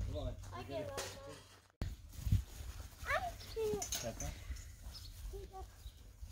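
Brief, indistinct high-pitched children's voices calling out, over a steady low wind rumble on the microphone.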